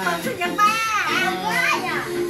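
Excited high-pitched voices, a young child's among them, chattering and exclaiming over quiet background music.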